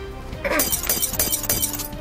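A glass-shattering sound effect, a quick run of sharp breaking crashes lasting about a second and a half, over background music. It marks four shields being broken at once in a card game.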